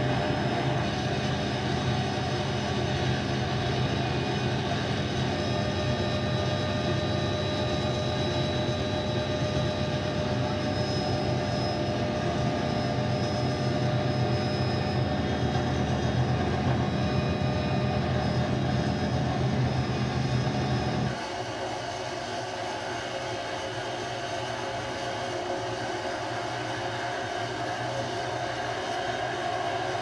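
Cabin noise of a Hughes 500 helicopter in flight: the steady whine of its turboshaft engine over a deep rotor drone. About two-thirds of the way in the deep drone cuts off abruptly, leaving a quieter steady whine.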